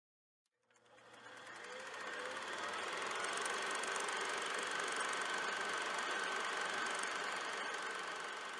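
Film projector sound effect: a steady mechanical rattle fading in about a second in and then running evenly.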